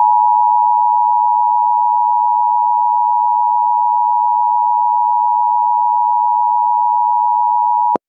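Emergency Alert System attention signal: two steady tones of 853 and 960 Hz sounded together, loud and unbroken for about eight seconds, starting and cutting off abruptly. It is the alarm that announces an emergency broadcast is about to follow.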